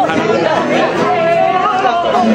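Several people talking at once: overlapping chatter of a small gathering, with one voice held on a long note near the end.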